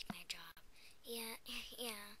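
A voice speaking a few short words in a breathy, whispery tone: speech only.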